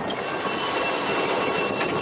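High, steady squealing of a loaded line and deck hardware as crew haul sheets on a sailing yacht, over wind and rushing water.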